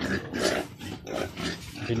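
Pigs grunting: several short, rough calls with brief gaps between them.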